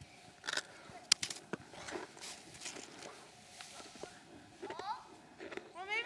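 A few scattered crunches and knocks, the sharpest about a second in, with a short rising voice about five seconds in.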